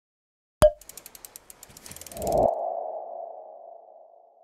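Logo sting sound effect: a sharp hit about half a second in, then a quick run of ticks that swells into one ringing tone, which slowly fades away.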